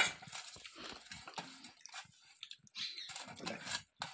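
Fingers scraping the last food out of a stainless steel bowl, with short irregular eating and mouth noises close to the microphone.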